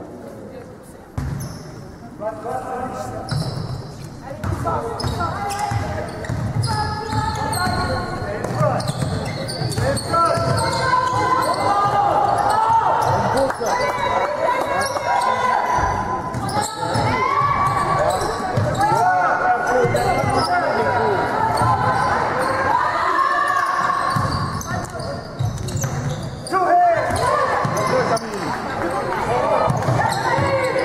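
Basketball bouncing on a hardwood court during play, with players' shoes and movement, in the echo of a large sports hall.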